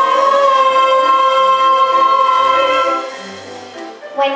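Ensemble of singers holding one long final note over orchestral accompaniment, which shifts beneath it. The music stops about three seconds in.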